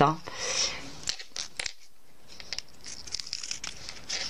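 Scissors cutting along a nylon zipper's fabric tape: an irregular run of small crisp snips and crunches.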